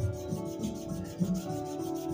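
Kneadable eraser rubbed quickly back and forth over pencil marks on paper, an even run of short scrubbing strokes, with soft background music underneath.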